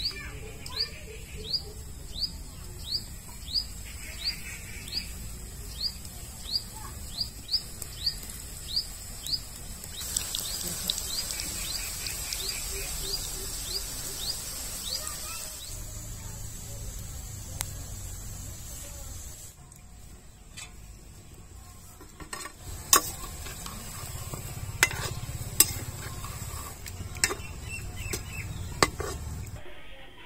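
Wheat-flour gulab jamun balls sizzling as they fry in hot oil in a kadhai. In the second half a slotted spoon knocks against the pan several times, with sharp clinks. Through the first half a bird calls over and over, short falling chirps about two a second.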